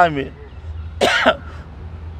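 A man clears his throat once with a short cough, about a second in.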